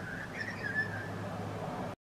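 A person whistling a slow, wavering tune that fades out about a second in, over a steady low hum.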